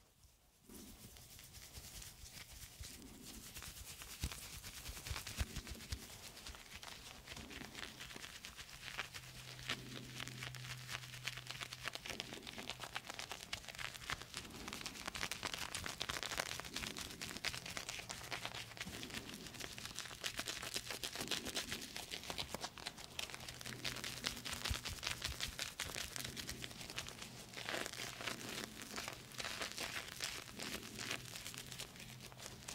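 Shaving brush swirling and whipping soap into lather in a plastic tub, close to the microphone: a continuous wet, bubbly crackle that starts about a second in.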